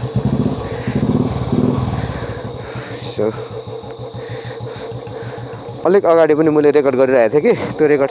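Royal Enfield motorcycle's single-cylinder engine starting and settling into a steady pulsing idle.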